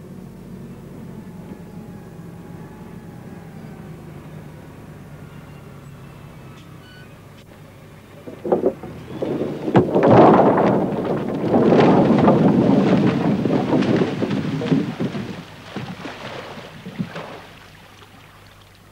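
A front loader's engine runs with a steady low hum. Then a grapple load of logs is dumped down a gravel bank: a sudden start about halfway through, followed by several seconds of loud rumbling and clattering as the logs tumble, dying away near the end.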